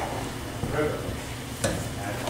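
Faint, indistinct voices in a meeting room over a steady background hiss, with a single sharp knock about one and a half seconds in.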